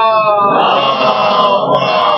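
A man's voice singing a long, wordless, wavering note in a naat recitation. From about half a second in, more voices overlap it.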